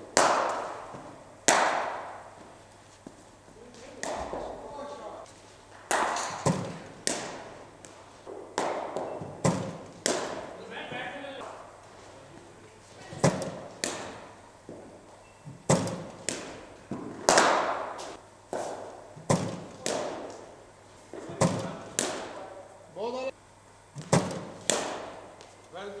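Cricket balls knocking in an indoor net: sharp impacts every one to two seconds, often in pairs about half a second apart, as the ball pitches on the matting and meets the bat or the backstop, each knock ringing on briefly in the hall.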